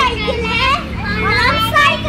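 Young children's high voices calling out and chattering, one voice following another closely.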